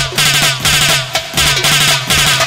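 Live band playing an instrumental passage of an Arabic pop song without singing: drums beat a quick, even rhythm over a steady bass line.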